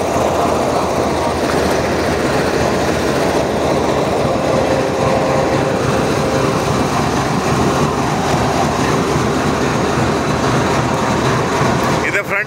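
Diesel-electric locomotive engine idling close by, a loud steady rumble.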